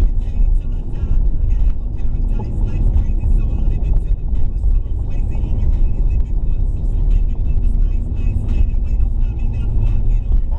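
Steady low rumble of a car driving, heard from inside the cabin, with music playing over it with a steady beat.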